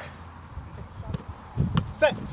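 Football being headed and kicked in a goalkeepers' head-tennis drill on grass: a few light thuds of the ball, then players' voices near the end.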